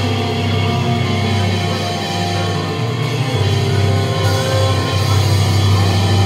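Yamaha electric keyboard playing slow sustained chords over a heavy bass, the chord changing about three seconds in.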